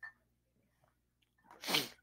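A single short sneeze from a person, about one and a half seconds in, preceded by a faint click.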